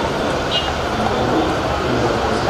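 Steady, loud background noise from a football training pitch with indistinct voices mixed in.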